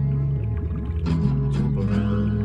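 Instrumental break in a song with no singing: a bass line moving in steps, with short gliding tones and a few sharp percussive hits above it.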